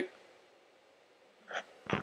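A pause between spoken phrases: near-silent room tone after the end of a word, then a short, faint intake of breath about a second and a half in, just before speech resumes.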